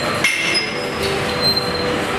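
Gym background noise: a busy weight room's general clatter with metal clinks, and a few faint steady whining tones that come and go.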